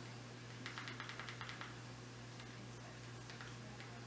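Faint clicks of Fire TV remote buttons being pressed to type on the on-screen keyboard: a quick run of clicks about a second in, then a few scattered ones. A steady low hum runs underneath.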